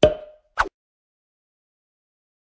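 Outro logo-sting sound effect: a sharp hit with a short ringing tone that fades quickly, then a second short hit about half a second later.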